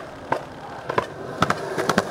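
Skateboard wheels rolling on concrete, with several sharp clacks and knocks from the board through the second half.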